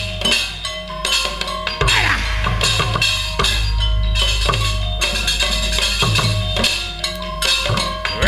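Live organ dangdut band music: electronic keyboard over drums and percussion keeping a steady beat, with occasional gliding tones.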